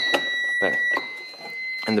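ADT Unimode 10UD fire alarm control panel's trouble sounder beeping a steady high tone, a trouble signal because the remote strobe was taken off its circuit. The tone weakens slightly about a second in. A few plastic clicks and knocks come from the strobe being twisted back onto its mounting plate.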